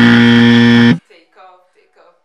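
Loud game-show-style buzzer sound effect: one flat, steady buzzing tone lasting about a second that cuts off suddenly, followed by faint speech.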